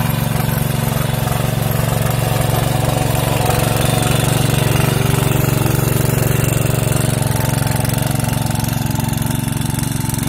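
Small engine of a green walk-behind power tiller running steadily under load as its rotary tines churn wet, muddy soil.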